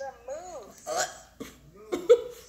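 A woman's voice making short, high-pitched vocal sounds.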